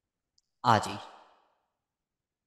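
Speech only: one short spoken word a little over half a second in, with silence on either side.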